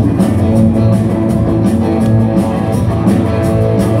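Live rock band playing an instrumental stretch between sung lines: electric guitars, bass guitar and drum kit, loud and steady.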